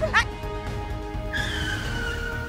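Tyres of a motor scooter screeching under hard braking: a high squeal that comes in suddenly about one and a half seconds in and falls slightly in pitch.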